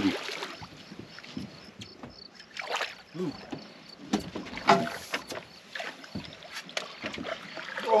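Scattered knocks and clatter on a fishing boat while a hooked catfish is brought alongside, with a short exclamation about three seconds in.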